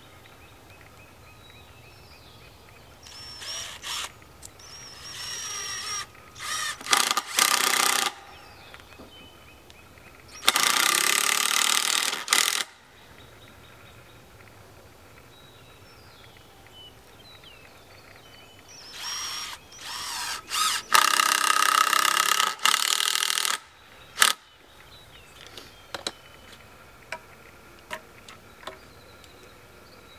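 Cordless drill driving three-inch exterior deck screws through a wooden cleat hanger into a tree trunk. It runs in several bursts: a few short starts, a run of about two seconds around ten seconds in, and a longer run of about three seconds past the twenty-second mark.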